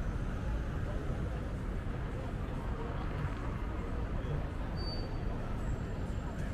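Busy city street ambience: a steady low rumble of passing traffic with indistinct voices of people nearby.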